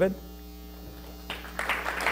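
A steady low electrical hum, then an audience starts applauding about one and a half seconds in, building quickly.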